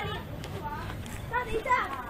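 Children's voices talking faintly and briefly, in a couple of short snatches.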